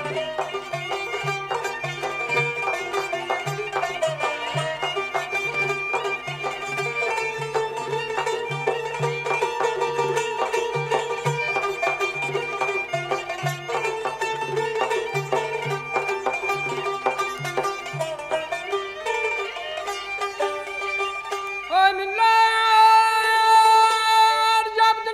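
An instrumental passage of Azerbaijani mugham in Chahargah (Çargah): rapid plucked-string runs with bowed strings, over a low pulsing accompaniment. Near the end a male voice comes in on a long, wavering sung note.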